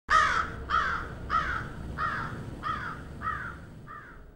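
A bird's harsh calls, about seven short ones evenly spaced about half a second apart, each falling in pitch, starting loud and fading away call by call.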